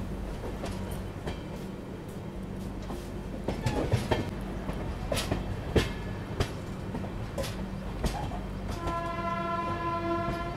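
A passenger express train running at speed, heard from an open coach doorway: a steady rumble with sharp wheel clicks over rail joints and points. About nine seconds in, a train horn starts and holds a steady note.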